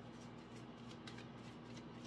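Faint shuffling of a deck of oracle cards by hand: a soft, quick run of small papery clicks.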